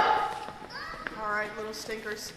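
The last note of children's singing dies away at the very start, then a child's voice speaks faintly in short bits, the words unclear.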